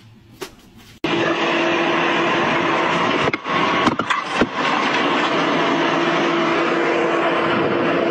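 A few light knocks, then about a second in a loud, steady mechanical drone with a constant hum starts abruptly and runs on, like a heavy machine running, with a couple of brief dips near the middle.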